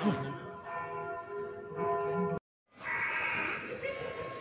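Church bells ringing, many held tones sounding together. The sound cuts out completely for a moment about two and a half seconds in, then the bells carry on, with a short harsh call just after.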